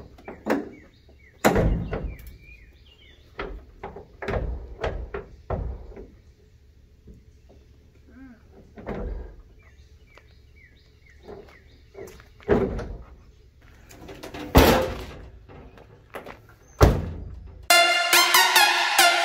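A pickup truck's stripped, bare-metal crew-cab door being swung and shut over and over, each close a sharp metal thunk, with small birds chirping between the closes.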